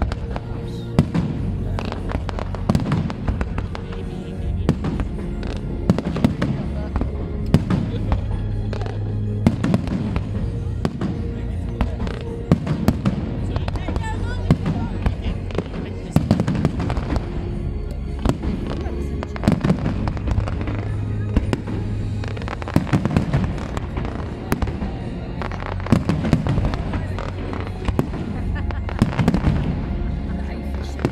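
A fireworks display: a dense, irregular barrage of sharp bangs and crackles, with louder reports scattered throughout.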